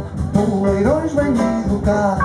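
Live jazz band playing with piano, saxophone, double or electric bass and drum kit, a melody line sliding up and back down about halfway through.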